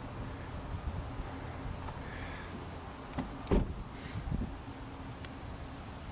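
The driver's door of a Mercedes-Benz 190E Evo II shut once, a single sharp thump about midway, with a few lighter clicks around it over a steady low rumble.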